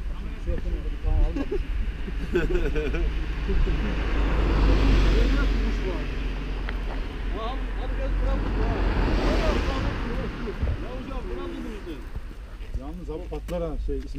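Two cars passing by on the road, each swelling up and fading away, the first about five seconds in and the second about nine seconds in, over wind rumble on the microphone.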